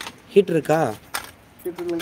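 A man's voice speaks two short utterances, the first falling in pitch about half a second in and the second near the end, with scattered light metallic clicks and clinks between them.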